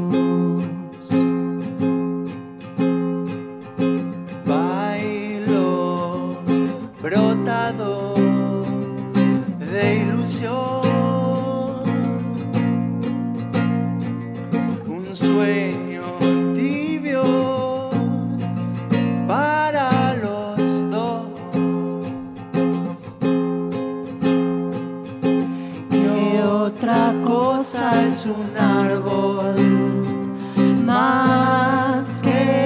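A man and a woman singing to a strummed acoustic guitar.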